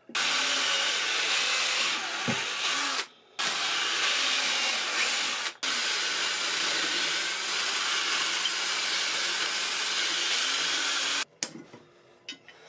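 Cordless drill running, its bit boring into poplar beside an embedded nail to free it for gripping with pliers. It runs in steady stretches, breaks off briefly twice, and stops abruptly near the end.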